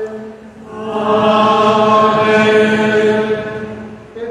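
Liturgical chant inside a church: voices hold one long sung note that swells about a second in and fades away near the end.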